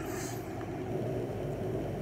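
Steady low background hum and rumble with faint hiss: room noise in a pause between speech.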